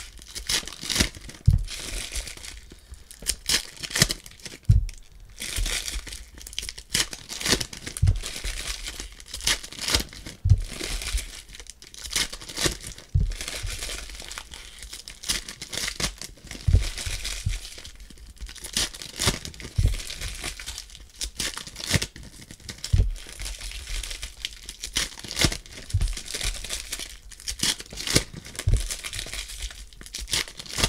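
Foil wrappers of Prizm basketball card packs crinkling and tearing as they are ripped open and handled, with constant crackling and frequent low bumps.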